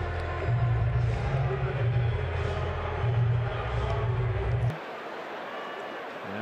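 Ballpark crowd noise from a game broadcast, with a steady low hum underneath. It cuts off abruptly about three-quarters of the way through and drops to a quieter crowd murmur.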